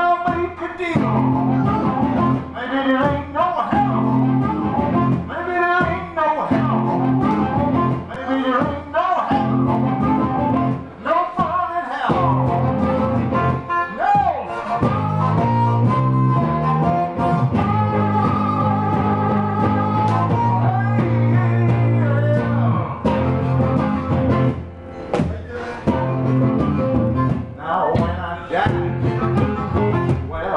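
Amplified blues harmonica solo played through a handheld microphone over electric guitar accompaniment. The harmonica plays bending, sliding notes, with long held notes around the middle.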